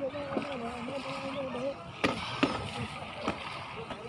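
Swimming-pool background of water splashing and distant voices. A single drawn-out voice is held for the first couple of seconds, and a few sharp knocks come in the second half.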